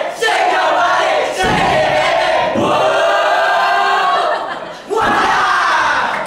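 A group of young voices shouting a cheer together, loud and sustained. It breaks briefly twice, about a second in and shortly before the end.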